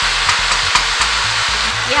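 Garlic-ginger paste and whole spices frying in hot oil in a pot: a steady loud sizzle with a few sharp pops of spattering, as a wooden spoon stirs the mixture.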